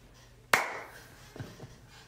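A single sharp hand clap about half a second in, ringing briefly in the room, followed by a couple of soft low thumps.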